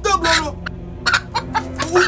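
A hen clucking in several short calls.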